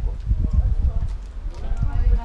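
People in a small group talking quietly, over an irregular low thumping rumble.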